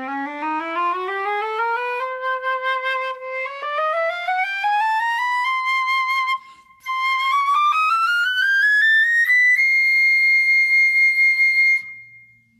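Powell Conservatory 9K Aurumite flute (9-karat rose gold over sterling silver tubing) playing a full-range chromatic scale, rising note by note from low C through about three octaves. A short breath breaks it about halfway, and it ends on a long held top note.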